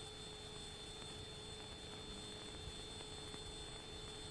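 Faint, steady hiss with a steady hum and a thin high whine, the background noise of an old film soundtrack; no other sound stands out.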